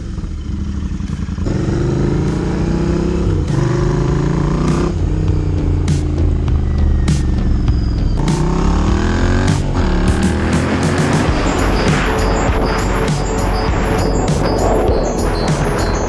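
Royal Enfield Continental GT650's parallel-twin engine pulling away and accelerating, its pitch rising and dropping back several times as it shifts up through the gears. Background music comes in over it about two-thirds of the way through.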